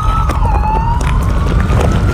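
A police siren wailing: one tone that slides down in its first half-second and then rises slowly, over a heavy low music beat.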